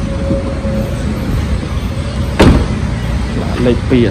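Tailgate of a 2002 Hyundai Starex van slammed shut: a single loud thud about two-thirds of the way through, over a steady low rumble.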